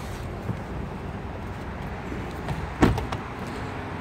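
A car door, the Mazda CX-5's, shut once with a single solid thud about three seconds in, over a steady low rumble.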